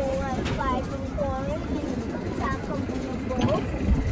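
Riders' voices calling out over the steady low rumble of a moving amusement-park ride.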